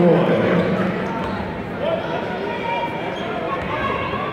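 Basketball being dribbled on a hardwood court, under the steady chatter of spectators' voices, with one voice loudest in the first half-second.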